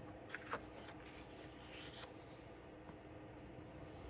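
Faint rustling of sheets of scrapbook paper being handled and laid on a paper scoring board, with a couple of light taps about half a second in.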